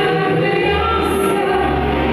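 Music with singing: a woman singing into a hand microphone over a backing track with a steady bass line.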